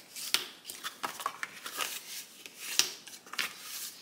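Bone folder rubbed along the score lines of a sheet of cardstock, a series of short, irregular scraping strokes, burnishing the folds crisp.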